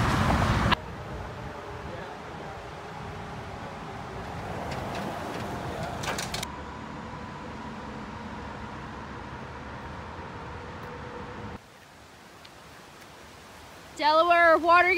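Road traffic noise. It is loud for the first second, then steadier and softer with a few brief clicks, and drops much quieter near the end.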